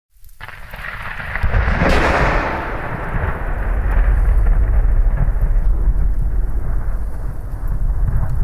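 Thunderstorm: rain with heavy rolling thunder. A thunderclap swells about two seconds in, and the low rumble carries on throughout.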